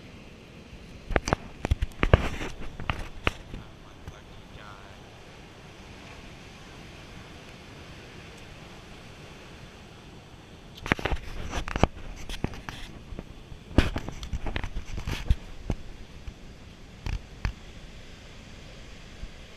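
Steady rush of ocean surf and wind, broken by two bursts of sharp crackling clicks: one about a second in and a longer one from about eleven to fifteen seconds in, with a few more clicks near the end.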